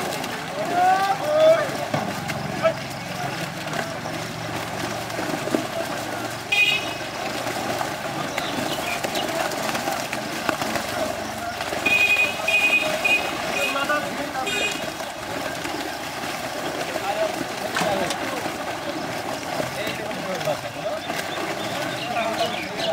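Men talking and calling out over splashing water as fish thrash in a net being hauled through a pond. A high beeping tone sounds briefly three times, about six seconds in and twice more a little past the halfway point.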